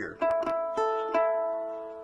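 Fingerpicked guitar: an A chord fretted up at the fifth fret, three notes plucked in turn about half a second apart and left ringing together as they fade.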